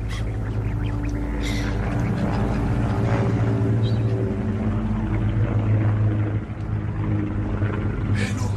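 Low, sustained droning tones that shift in pitch, dipping briefly about six and a half seconds in.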